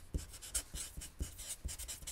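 Felt-tip Sharpie marker writing on paper: a run of short, quiet strokes, several a second, as a word is written out.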